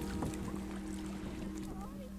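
Kayak paddle dipping and splashing in calm sea water, under soft background music of long held notes.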